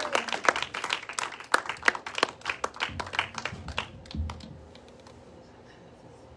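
A small congregation applauding: a run of scattered hand claps that thins out and stops about four seconds in.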